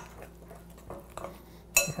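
Metal spoon stirring batter in a stoneware mixing bowl: light scraping and a few soft clicks, then a sharp, ringing clink of metal on ceramic near the end.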